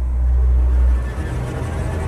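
Deep, loud rumbling drone of horror-style sound design in a radio bumper, ringing on after a hit. About a second in it breaks into a choppy, stuttering low rumble.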